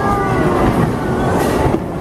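Continuous low rumble of a bowling alley: balls rolling down wooden lanes and the pinsetter and ball-return machinery running.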